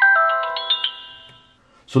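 Acumen XR10 mirror dash cam's shutdown chime: a quick run of electronic tones stepping down in pitch, ringing out and fading within about a second and a half, played as the unit powers off.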